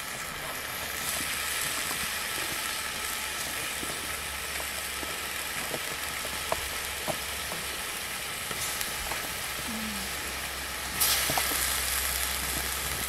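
Chopped vegetables sizzling in a metal stock pot over a wood fire, cooking without water yet: a steady frying hiss with a few faint clicks, louder near the end.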